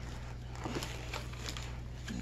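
Faint rustle of plastic-packaged items being handled and shifted inside a backpack, over a steady low hum.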